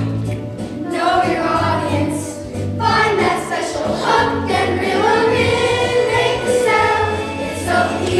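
A chorus of children's voices singing a song together over instrumental accompaniment with a steady bass.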